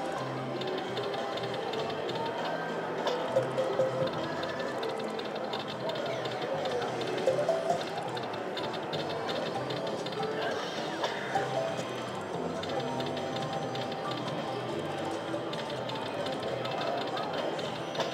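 Video slot machine's free-games bonus music playing as the reels spin and pay out, with background voices.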